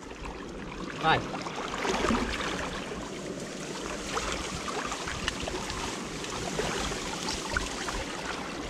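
Water splashing and sloshing irregularly as people wade through muddy water and work a large mesh sieve net along a grassy bank.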